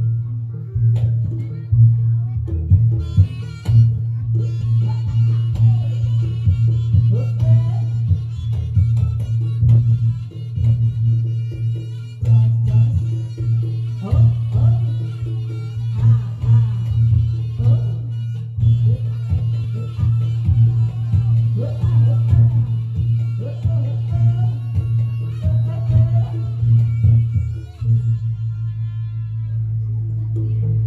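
Live Reog Ponorogo accompaniment music: drums struck over a steady low drone, with a melody line above, played without a break.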